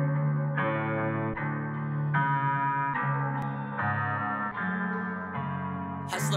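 Melodic guitar intro of a trap beat, played through a chorus effect, with a new note or chord about every second and no drums yet.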